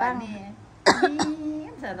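A person's single cough that starts suddenly about a second in, followed by a short held voiced sound like throat clearing.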